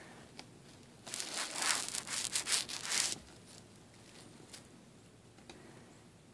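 Cat's fur rubbing against the phone's microphone: a scratchy rubbing noise, close and loud, starting about a second in and lasting about two seconds. A few faint ticks follow.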